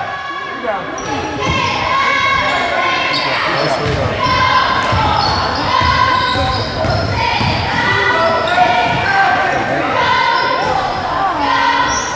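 Basketball sneakers squeaking repeatedly on a hardwood gym floor and the ball bouncing during play, with voices echoing in the hall.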